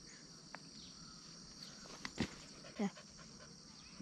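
Faint, steady high-pitched chorus of insects such as crickets in forest, with a few light clicks and one short, falling vocal sound, like a brief yelp or murmur, near three seconds in.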